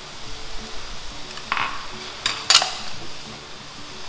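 Plastic spatula and spoon knocking and scraping against a metal wok as shredded vegetables are tossed. A few sharp clacks come in the middle, the loudest about two and a half seconds in.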